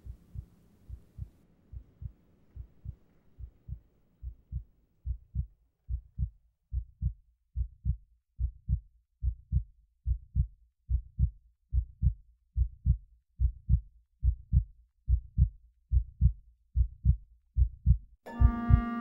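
A heartbeat sound: paired low thumps, a little faster than one beat a second, growing steadily louder.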